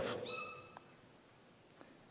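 A brief, faint, high-pitched squeak with a steady pitch, lasting about half a second, heard under the fading echo of the preceding speech.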